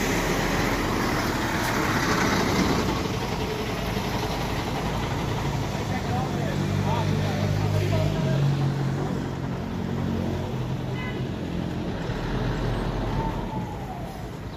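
Heavy road traffic at close range: buses and trucks running in a slow queue, with a big engine's low, even hum growing loudest for a few seconds in the middle.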